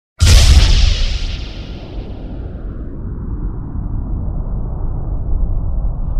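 Logo-intro sound effect: a sudden loud boom with a hiss that fades over about two seconds, then a steady low rumble.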